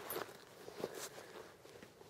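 Rustling of clothing and a few small clicks and knocks as a prone shooter shifts his hands and cheek on the rifle and settles into position.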